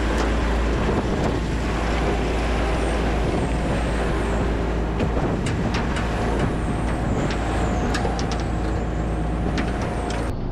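A heavy truck engine running steadily, with a few sharp metallic clicks and clanks about halfway through and later.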